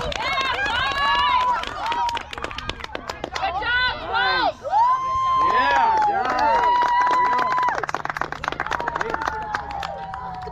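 Excited shouting and cheering from several overlapping voices, many of them high-pitched children's, with long drawn-out yells about halfway through.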